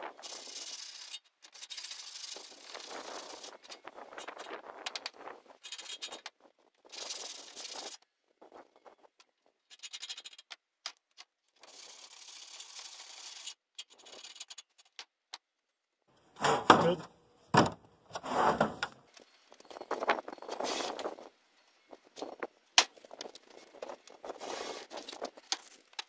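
Sandpaper on a wooden sanding block rubbed in repeated strokes along the cut edge of a painted sheet-steel shelf, deburring it. About two-thirds of the way through, the strokes become louder and more uneven, with a sharp click near the end.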